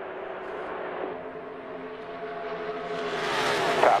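NASCAR Cup stock cars' V8 engines running at full speed in a pack. The sound swells louder near the end as cars sweep past close by.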